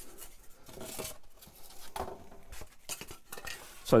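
Handling noise as black foam wing pieces are picked up and moved on a wooden bench: scattered small taps, clicks and soft scrapes.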